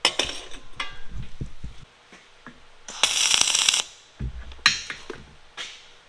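MIG welder tack weld: a short, crackling arc burst of under a second about three seconds in, tacking a steel table leg in place. Steel clinks and knocks from the leg and square being handled before it, and shorter crackling bursts after it.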